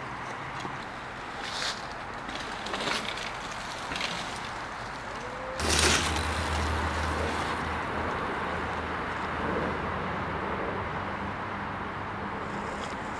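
Mountain bike riding a dirt-jump trail, with a few light knocks and then a loud clatter about six seconds in as the wheels cross a wooden pallet ramp close by; a low steady rumble follows.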